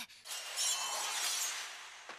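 A faint sound effect from the anime's soundtrack: a hiss-like swell with a high shimmer that starts about a quarter second in and fades away over about a second and a half.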